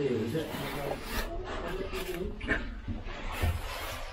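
Caving oversuits scraping and rustling against rock and mud as cavers crawl through a low passage, several short rasping scrapes, with indistinct voices.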